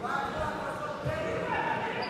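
Voices shouting in a large sports hall, long held calls rising and falling, with a low thump about a second in.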